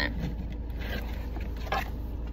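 Tarot cards being shuffled by hand: soft papery scrapes, with two brief louder ones about a second in and near the end, over the steady low hum of a car cabin.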